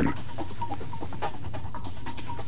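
Muffled, indistinct noise of a crowded dance club, a steady murmur with scattered short sounds and no clear beat.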